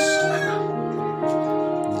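A rooster's crow trails off, falling in pitch, within the first half-second, over background music with held notes.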